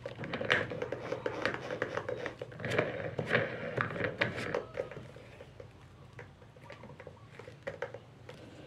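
Rapid clicking and light metallic rattling as the drill's chuck is turned by hand to tighten it on the sanding disc's arbor, busy for about five seconds and then only a few scattered clicks.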